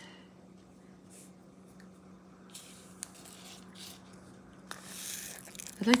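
Faint rustling and scraping with a light click about three seconds in: diamond painting canvas, its plastic film and a small plastic drill container being handled, over a steady low hum.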